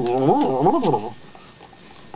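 A man imitating a cow's moo in a wobbly voice, its pitch wavering rapidly up and down. It breaks off about a second in.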